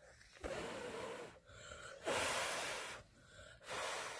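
A child blowing on a glowing piece of char cloth in four long breaths, the third the loudest, to keep alive the ember that a ferro rod spark has just lit.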